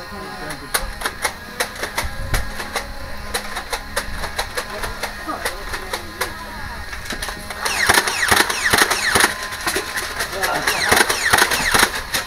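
Sharp clicks and knocks, several a second and irregular, with a burst of high shouting voices about eight seconds in.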